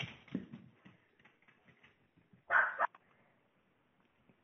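A puppy's single short bark about two and a half seconds in, with a fainter brief sound just after the start.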